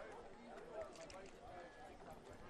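Near silence: faint background ambience during a pause in the commentary.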